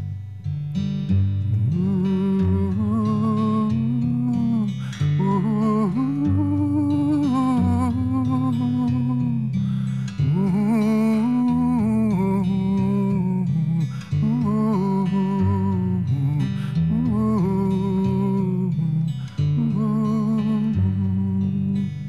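Acoustic guitar played with a man's voice humming a wordless melody with vibrato over it, in phrases of a few seconds with short breaths between.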